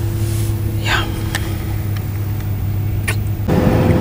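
Steady low hum of a car running, heard from inside the cabin, with a couple of short clicks. Near the end it changes abruptly to a different, noisier background.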